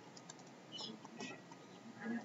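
Faint, irregular taps and short scratches of a stylus on a tablet as a word is handwritten.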